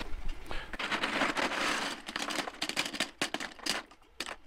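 A handful of 3D-printed plastic parts dropped into a plastic bucket of more such parts, clattering. A dense rattle in the first half gives way to scattered single clicks.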